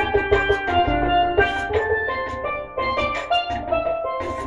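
Steel pan played with mallets, a quick run of ringing melody notes several per second from a reggae tune. Under it runs a low bass and drum pulse, likely a backing track.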